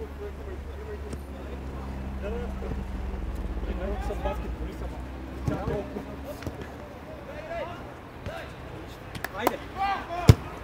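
Ambient sound of a small-sided football match: players' distant calls and shouts over a steady low hum, with a sharp ball kick near the end.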